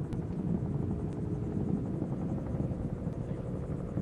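Space Shuttle ascent, with the solid rocket boosters and three main engines burning: a steady, rough, uneven low rumble.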